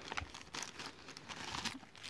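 Faint, irregular crinkling and rustling of a polka-dot paper packaging bag being handled and drawn out of a cloth pouch.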